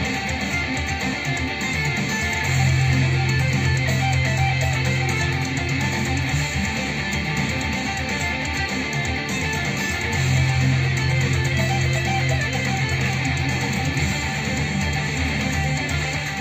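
Electric guitar playing a melodic intro with octave lines, with a long held low note about two and a half seconds in and another about ten seconds in.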